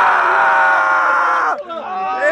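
A long, loud scream, held at a steady pitch and cutting off about one and a half seconds in, followed by voices talking.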